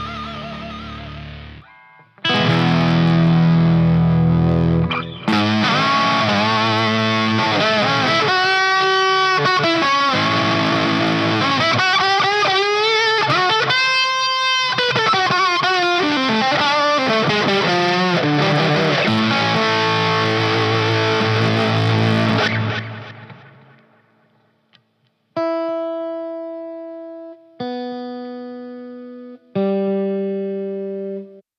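Electric guitar strung with D'Addario NYXL strings, played through heavy distortion with wide string bends and vibrato for about twenty seconds. After a short gap, three open strings are plucked one at a time, high E, then B, then G, each ringing clean and fading, for a tuning check after the bends.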